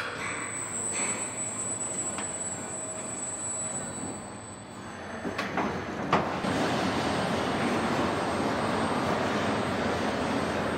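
Automated battery-plant machinery running: a steady mechanical rumble and hiss, with a few sharp clanks about five and six seconds in, after which the machine noise becomes louder and fuller.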